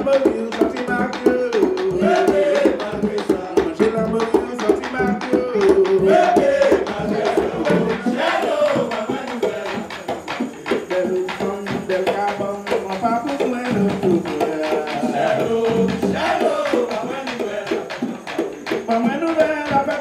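Live bèlè music accompanying a danmyé combat dance: a hand-played tanbou bèlè drum beats a fast, steady rhythm under several singers' voices.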